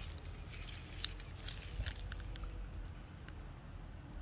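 Faint rustling and scattered light clicks over a low wind rumble on the microphone, the clicks mostly in the first two seconds and thinning out after.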